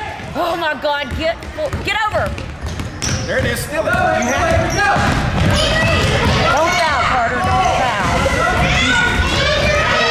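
A basketball bouncing on a hardwood gym floor amid players' and spectators' voices calling out in the hall. The voices grow louder about four seconds in.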